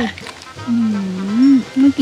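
A man hums a long, exaggerated 'mmm' of enjoyment with food in his mouth, starting under a second in and rising in pitch at its end.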